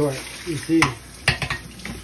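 Metal pot knocking against a stainless steel sink as it is rinsed under a running tap: a few sharp clanks over the steady hiss of running water.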